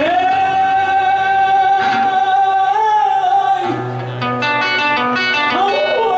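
Live Panamanian folk song: a singer holds one long high note for about three seconds over nylon-string acoustic guitar. The guitar then plays on alone, and the voice comes back with a moving line near the end.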